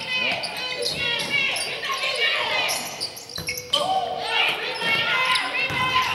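Basketball game on a hardwood gym floor: the ball bouncing and players' sneakers squeaking, in short repeated chirps, as they move about the court.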